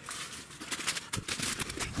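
Footsteps and scrapes on rock and leaf litter as someone clambers through a narrow crack between boulders, a quick run of sharp clicks and scuffs starting a little under a second in.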